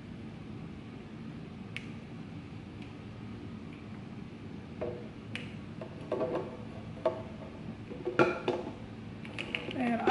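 A blender jar knocking and clinking against the rim of a glass mason jar as thick smoothie is shaken out of it. A steady low hum comes first, then from about halfway a string of irregular knocks, several ringing briefly like glass, with the loudest near the end.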